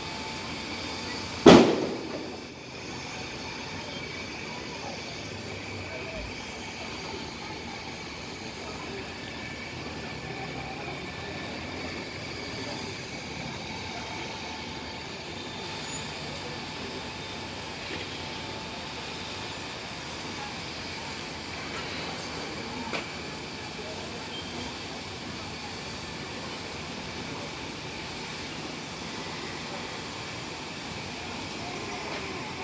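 Steady rumble from a large house fire and the fire engines in the street around it, heard from high above, with one sharp, loud bang about a second and a half in.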